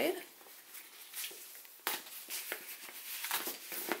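Soft handling clicks and rustles as a fabric bag strap is slid off the split metal ring of a handbag's strap hardware. A few sharper metallic clicks come spread through.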